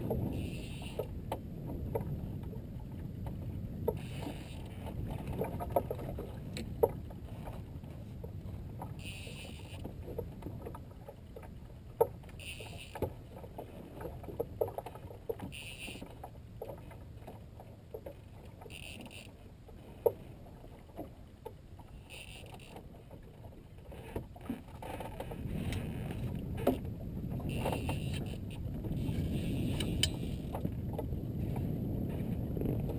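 Water sloshing against a small fishing boat's hull with a low steady rumble of wind and water on the microphone, heavier near the start and end. Scattered sharp clicks and knocks and brief hissing bursts every few seconds.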